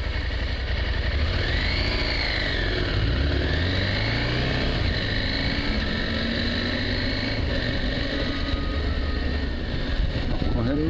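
Adventure motorcycle's engine pulling away and accelerating, its note rising and falling in pitch as it gathers speed, with steady road and wind noise.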